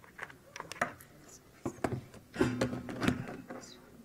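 Irregular clicks and knocks of a laptop and its display adapter being handled and plugged in close to a microphone, busiest in the second half, with a short low hum of a voice about two and a half seconds in.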